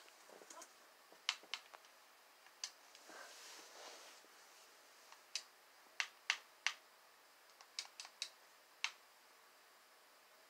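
Faint, sharp button clicks, about a dozen at uneven intervals, some in quick runs of two or three, as the media player's playback is skipped and paused. There is a soft, brief rustle about three seconds in.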